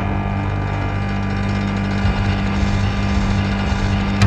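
Electronic body music (EBM) intro: a sustained synthesizer drone of steady low tones with a faint low pulse underneath.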